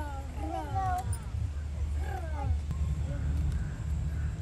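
A toddler's short vocal sounds, gliding and falling in pitch, in the first second and again about two seconds in, over a steady low rumble.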